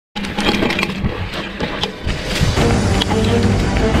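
Background music, growing fuller and louder about two and a half seconds in.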